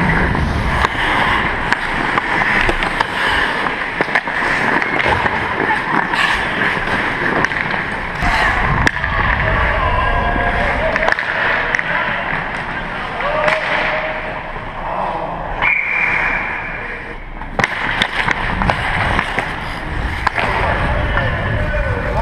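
Ice hockey play heard from a helmet-mounted camera: skate blades scraping and carving on the ice, sticks and puck clacking, and indistinct players' voices, with wind and rustle on the microphone. A brief steady high tone sounds about two-thirds of the way through.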